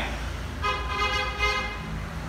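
A vehicle horn sounds once, a steady toot a little over a second long, over a low steady hum.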